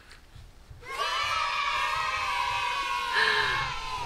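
Sound effect of a group of children cheering in one long held shout, starting about a second in.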